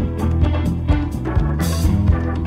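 Music with a drum kit and bass playing a steady beat, and a cymbal wash near the end.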